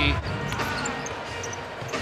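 Basketball arena game sound: a low crowd murmur with a basketball bouncing on the hardwood court.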